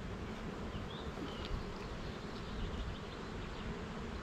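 Honeybees buzzing steadily around an opened hive, its frames crowded with bees.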